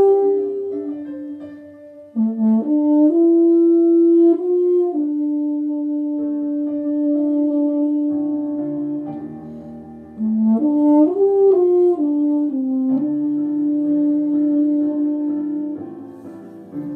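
Euphonium playing a slow melody of long held notes, with short breaks for breath about two seconds in and again about ten seconds in.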